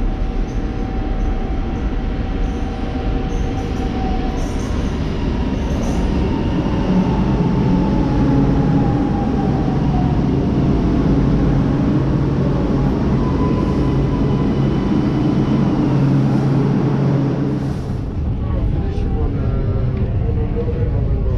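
Milan Metro Line 2 train pulling into an underground station: a loud rumble of wheels and traction motors, with a whine that slides down in pitch as the train brakes. Near the end the sound changes as the recording moves inside the car.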